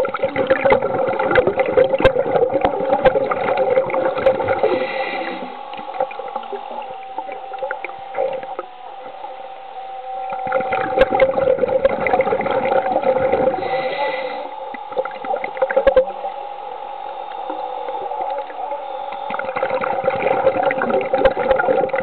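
Underwater sound of a small PVC-framed ROV's electric thrusters running: a steady motor whine with two bouts of churning, crackling water noise, from the start to about five seconds in and again from about ten to fifteen seconds.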